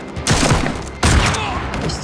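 Gunfire: two loud bursts of shots about three-quarters of a second apart, each trailing off in an echo.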